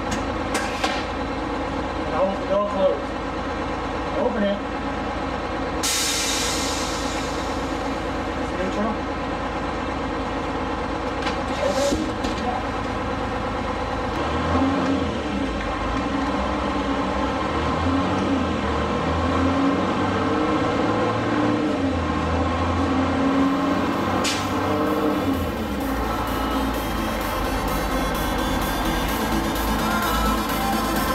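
Detroit Diesel 6-71 two-stroke six-cylinder engine idling steadily, running on only five cylinders, which the owner puts down to a bad injector. A short sharp hiss of air comes about six seconds in, with briefer hisses near halfway and about four-fifths of the way through.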